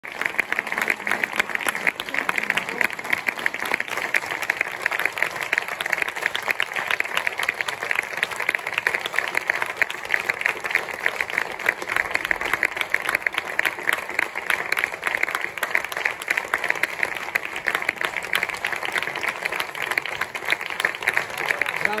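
Theatre audience applauding, dense steady clapping from many hands.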